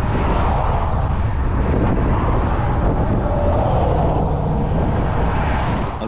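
Steady wind rumble on a bike-mounted camera's microphone in a strong crosswind, mixed with the road noise of vehicles passing at highway speed.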